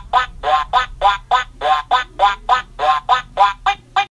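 A rapid, even run of cartoon duck quacks, about four a second, over a steady low music note, as an intro jingle sound effect.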